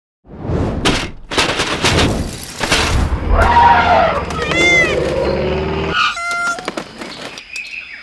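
Cartoon sound effects for animated toy DUPLO animal bricks: quick whooshes and knocks as the pieces fly about, then voice-like animal calls, and a short ringing tone over rapid clicks about six seconds in.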